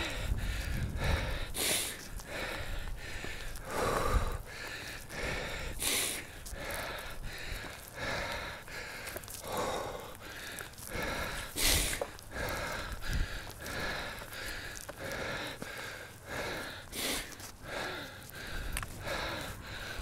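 A man breathing hard and fast, out of breath from climbing a long flight of steps: a steady run of heavy breaths, a few of them sharper and louder.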